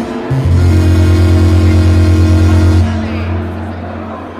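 Langarm dance music played live on an electronic keyboard: a held low bass note and chord come in about a third of a second in, sustain loudly for about two and a half seconds, then fade away.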